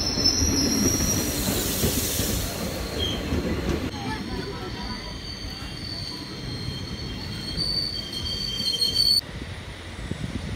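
Passenger train coaches rolling past with wheels squealing in steady high tones over a low rumble, slowly growing quieter. The sound drops suddenly about nine seconds in.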